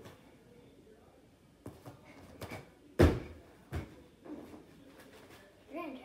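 Bare feet thudding on a gym mat during jumping exercise: a handful of separate thuds, the loudest about halfway through. A child's voice comes in briefly near the end.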